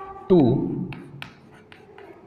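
Chalk writing on a blackboard: a handful of short, sharp taps and scrapes as the chalk forms letters, spread over the second half.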